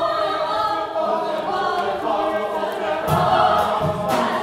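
Choir singing, many voices holding overlapping notes. From about three seconds in, low thumps join in a steady beat.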